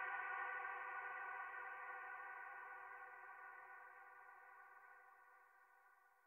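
The closing held synthesizer tone of an electronic track: one rich, steady sound that fades out slowly and evenly.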